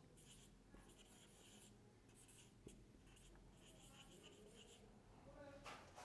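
Marker pen writing on a whiteboard: faint scratchy strokes in short runs with brief pauses between them.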